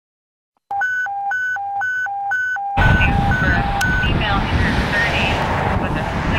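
Fire station alert tone: a two-note electronic signal alternating high and low about twice a second. About three seconds in, loud steady outdoor noise comes in over it, and the tone fades out a second later as a voice begins.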